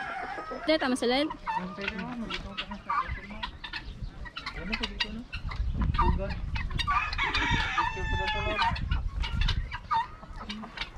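Many chickens clucking, with a rooster crowing in one long call about seven seconds in.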